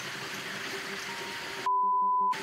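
Steady hiss of river and outdoor background noise, then near the end a loud, steady single-pitch censor bleep cuts in, blanking out all other sound to mask a word.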